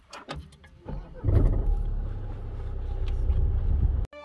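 A Renault car's engine is started with the push-button. About a second in it catches and settles into a steady idle, heard from inside the cabin.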